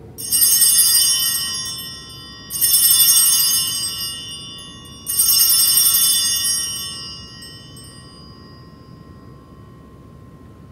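Altar bells rung three times as the consecrated host is elevated, each ring a bright jingle that fades away, about two and a half seconds apart.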